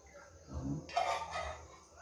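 Faint animal calls in the background: a short pitched call about half a second in, then a longer, higher one about a second in.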